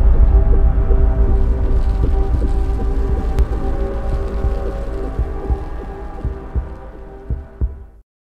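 Cinematic logo-intro sound design: a low drone with a few steady held tones and irregular deep thuds underneath, the tail of a big boom, fading steadily away to nothing by the end.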